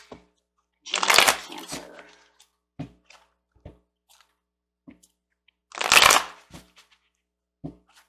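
A deck of tarot cards being shuffled by hand: two loud bursts of shuffling, one about a second in and another about six seconds in, with light taps and clicks of the cards in between.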